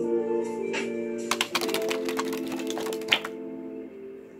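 A deck of large-print playing cards spilling from the hands onto a wooden chalkboard and table: a rapid run of card clicks lasting about two seconds, ending with a sharper tap, over background music with steady held chords.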